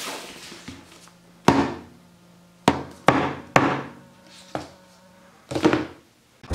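A hardcover book used as a hammer, striking a nail in a pine board about six times at uneven intervals. The book is too soft to drive the nail well.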